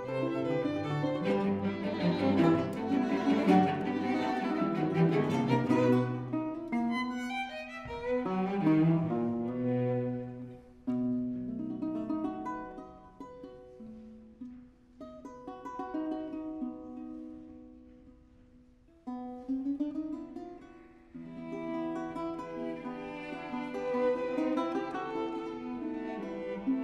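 A chamber trio of violin, classical guitar and cello playing classical-era music live. The texture is full at first, thins to a quieter, sparser stretch in the middle that nearly dies away just before the twentieth second, then all three play fuller again.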